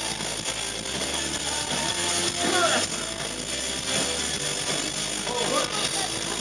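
Live band music heard from the audience: electric guitar and drums, with brief vocal phrases over them.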